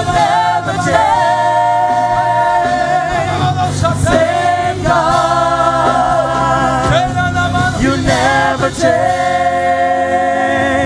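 Gospel worship singing: a group of voices holding long, wavering notes together, over low sustained keyboard notes.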